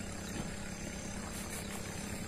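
A steady, low mechanical hum with faint background noise, with no clear events in it.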